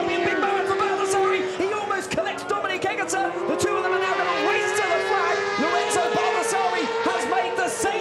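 Race commentator's voice over background music, with no clearly separate engine or crash sound.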